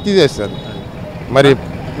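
A man speaking two short bits of speech, over steady street traffic noise.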